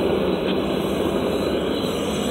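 Propane burner of a Devil Forge melting furnace running at full flame: a steady, even rush of burning gas that sounds like a jet engine.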